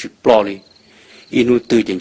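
A man's voice narrating a story in Hmong, with a faint, high, pulsing chirp heard behind it during a short pause in the speech.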